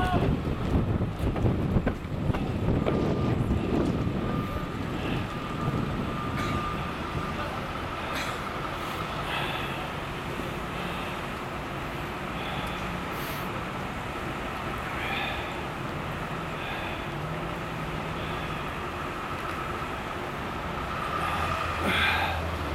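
City street traffic noise: a steady background of vehicles running, with a thin steady whine. It is louder and rougher for the first few seconds, then settles.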